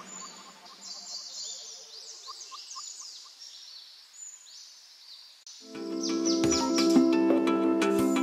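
Birds chirping with quick, high, downward-sliding notes. About five and a half seconds in, louder background music with plucked notes comes in.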